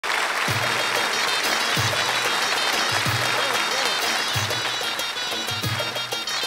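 Studio audience applauding and clapping along to a live Balkan folk band with accordions, a deep bass beat falling a little over once a second.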